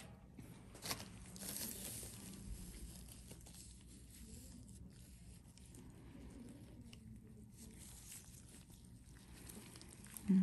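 Faint rustling and crinkling of gloved hands handling gauze during a skin extraction, with one short click about a second in.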